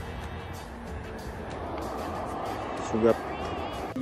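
Steady wind and road rumble on a phone microphone while riding a bicycle across a bridge, with music playing underneath and a short voice-like sound about three seconds in.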